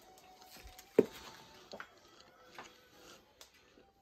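Handling noise at a kitchen counter: one sharp knock about a second in, then a few light clicks and taps.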